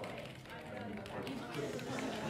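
Indistinct background chatter of several voices, with no words that can be made out, like people talking elsewhere in an office.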